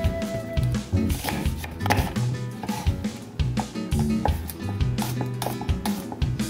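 Background music with a steady bass line, over repeated strokes of a kitchen knife chopping onion on a wooden cutting board.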